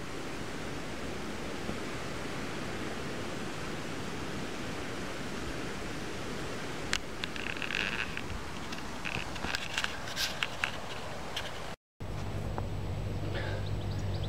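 Water rushing and lapping against an inflatable kayak's hull as it moves through weedy water, a steady noise with small splashes and ticks from about seven seconds in. After a brief dropout near the end, a steady low hum takes over.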